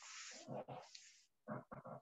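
A person's breath drawn in sharply at the start, followed by faint mouth sounds and soft, broken syllables during a pause in speech; the rest is close to silence.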